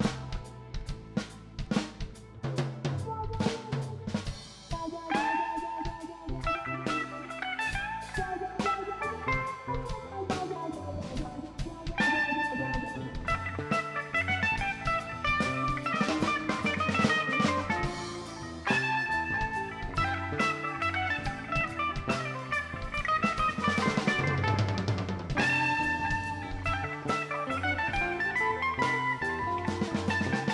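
Live rock band playing an instrumental jam with no singing: a drum kit hitting steadily throughout, joined by melodic instrument lines about five seconds in, with the band getting louder around twelve seconds in.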